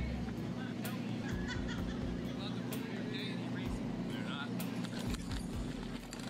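Outdoor speech from a filmed street confrontation: a man tells the person filming that he is going to make him erase the video, over a steady low hum of background noise.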